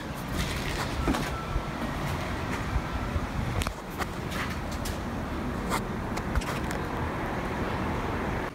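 Steady outdoor background noise, a continuous hiss with a rumble underneath, broken by a few short clicks in the second half.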